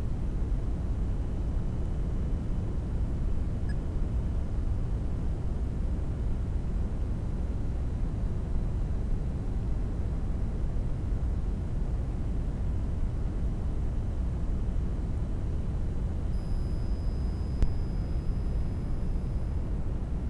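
Steady low rumbling background noise with a fainter hiss over it, and a single faint click near the end.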